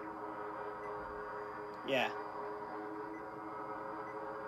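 Proffie-board Neopixel lightsaber's idle hum from its built-in speaker: a steady drone of several tones held at one pitch.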